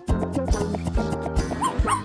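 Background music with a puppy yipping briefly near the end.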